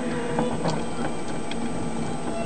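Plastic parts of a Transformers Universe Galvatron toy clicking and rubbing as they are handled during its transformation: a few faint clicks over a steady hiss.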